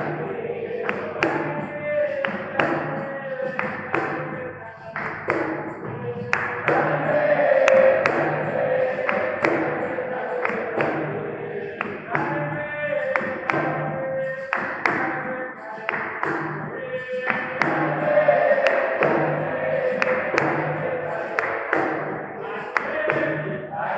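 Live capoeira roda music: berimbaus and an atabaque drum playing a steady rhythm, with the circle's handclaps and group singing.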